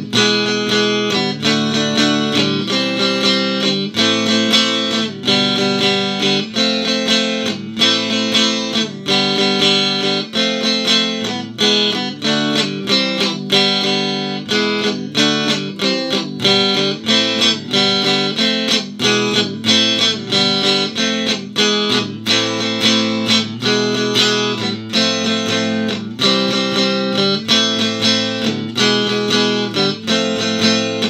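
Fesley FDK800 Stratocaster-style electric guitar playing a steady rhythmic piece of chords and single notes, evenly loud throughout.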